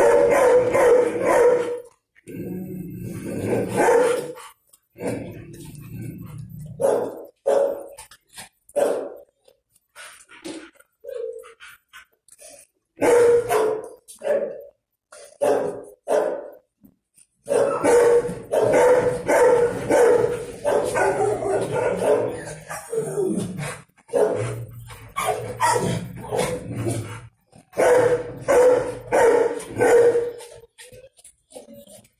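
Dog barking repeatedly in bouts of a few seconds, with short pauses between them.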